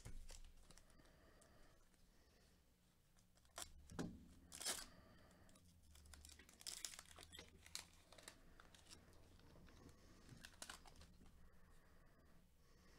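Foil trading-card pack being torn open and its wrapper crinkled, faint, with the loudest rips about four seconds in and a flurry of crinkling a few seconds later.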